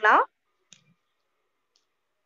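The end of a spoken word, then near silence with one faint click about three quarters of a second in.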